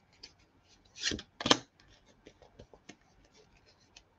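Tarot cards being handled over a table: small flicks and ticks of card edges, with two louder slaps of cards about a second in, half a second apart.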